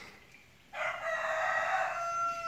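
A rooster crowing once: a long call that starts about a second in, rough at first, then a held pitched note.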